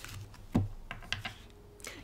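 Tarot cards being handled and put down on a tabletop: a handful of light, separate clicks and taps.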